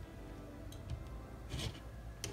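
Quiet background music, with brief rustles of cotton fabric being handled and pinned, the clearest about one and a half seconds in.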